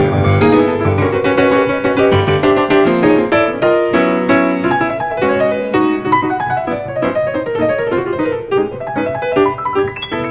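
Grand piano played in a jazz improvisation: a steady flow of many quick notes over a low register, with a low chord held briefly about four seconds in.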